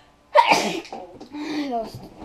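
A child's loud sneeze: a faint in-breath, then a sudden sharp burst about a third of a second in that fades within half a second, followed by a short voiced sound falling in pitch.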